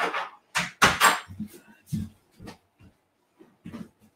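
A door being closed: a few short knocks and bumps, the loudest about a second in, with some shuffling.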